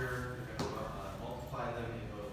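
Indistinct talking in a room, with a single sharp click a little over half a second in.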